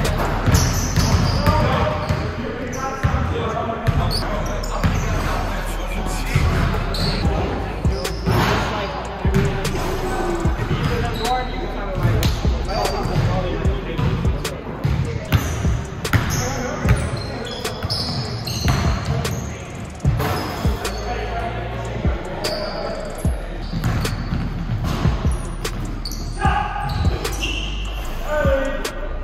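Basketball bouncing on a hardwood gym floor in repeated irregular thuds, from dribbling and play during a game. Indistinct players' voices and calls sound over it.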